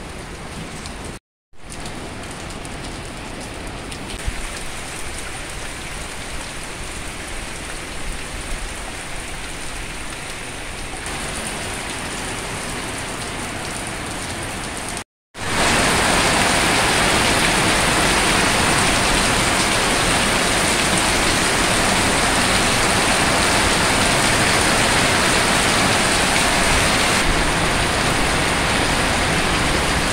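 Heavy rain falling, a steady dense hiss. It cuts out briefly twice, once near the start and once about halfway, and is louder after the halfway break.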